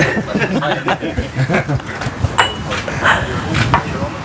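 A group of men laughing and talking over one another, with a few short, sharp clicks and clinks among the laughter.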